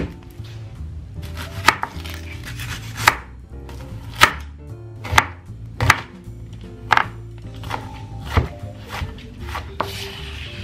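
Kitchen knife chopping a yellow onion on a plastic cutting board: a sharp knock of the blade on the board about once a second, at an uneven pace.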